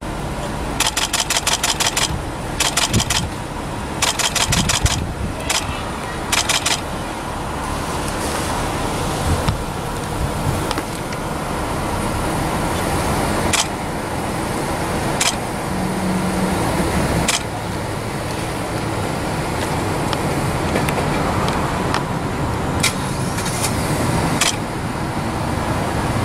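Camera shutters firing in four rapid bursts of clicks in the first seven seconds, then single clicks now and then, over steady parking-lot car and traffic noise.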